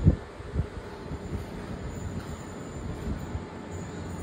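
Footsteps of someone walking with a handheld phone, soft low thuds about once a second over a steady low rumble, with one louder thump at the start.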